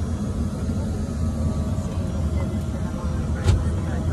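Steady low rumble heard from inside a vehicle's cabin, with a single light knock about three and a half seconds in.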